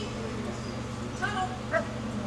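Dog giving two short, high-pitched yips about half a second apart, over a steady low hum.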